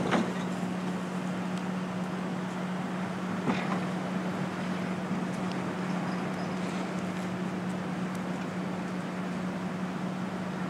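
Steady low hum over outdoor background noise, with a sharp knock at the start and a softer knock about three and a half seconds in.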